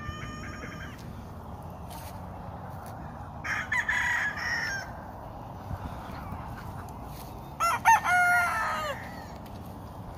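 Gamecock roosters crowing twice: one crow about three and a half seconds in, and a louder one about seven and a half seconds in, each trailing off downward in pitch.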